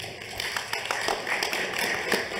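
Audience applause: many hands clapping in an irregular patter that builds over the first half second.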